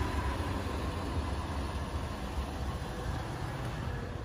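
Toyota Prado's petrol V6 idling: a steady low rumble with an even hiss above it.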